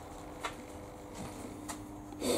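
Faint steady electrical hum from the running mains load setup, with two light clicks about half a second in and near the end.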